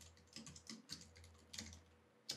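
Faint computer keyboard typing: a quick, irregular run of individual keystroke clicks as a word is typed out.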